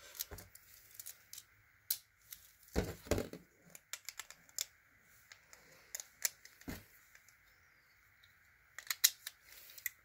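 Beyblade tops and their burst-apart plastic and metal parts being picked up out of a plastic stadium: scattered light clicks and knocks as the pieces clink together and tap the stadium floor.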